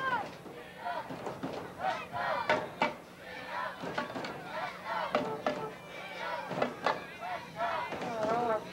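Spectators in a small stadium crowd shouting and calling out, many short overlapping cries and yells from different voices.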